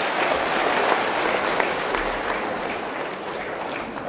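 Audience applauding, a dense steady clapping that slowly tapers off toward the end.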